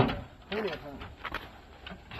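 A few light clicks and taps from a pickup's diamond-plate aluminum bed toolbox as its lid and latches are handled and the lid is lifted, with a faint voice talking briefly.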